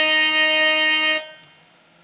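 Casio CTK-3200 electronic keyboard sounding one long held melody note, released a little over a second in.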